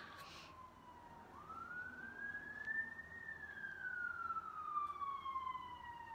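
Ambulance siren passing outside, heard faintly: a slow wail that dips, climbs over about two seconds, then falls slowly over about three seconds before starting to climb again at the end.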